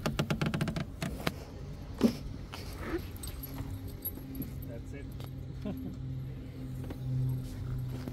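Lamborghini Aventador SV scissor door pulled down by its strap and shut: a quick run of light clicks, then one heavy thud about two seconds in. A steady low hum follows.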